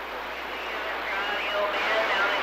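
CB radio receiver hissing with static after the operator unkeys, a weak, broken voice faintly coming through the noise: a long-distance skip signal from a station hundreds of miles away.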